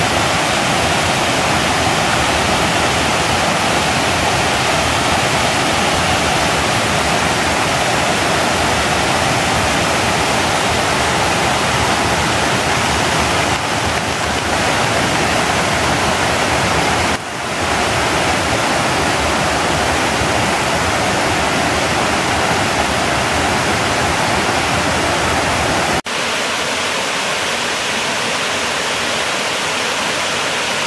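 Waterfall cascading over rock ledges: a steady, loud rush of falling water. It dips briefly a little past halfway, and near the end the rush turns thinner, with less low rumble.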